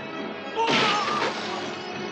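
A sudden crash of shattering glass about two-thirds of a second in, a car windscreen breaking under a body's impact, over dramatic film score.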